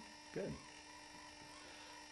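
Quiet room tone with a faint steady hum, broken by one short spoken word about half a second in.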